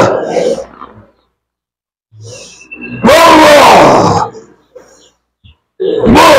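A man in a trance letting out loud, animal-like roaring cries. One long cry with a bending, falling pitch fills the middle, and another begins near the end.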